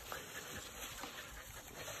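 Faint sounds of a pen of Labrador retriever puppies: panting, with light scuffs and ticks of paws moving on wood shavings.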